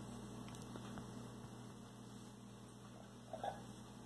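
Quiet room tone with a faint steady electrical hum, and one brief faint sound near the end.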